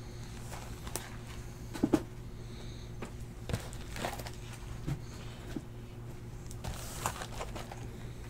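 Scattered light knocks and rustles of cardboard card boxes being handled and set down, a double knock near two seconds in, over a steady low hum.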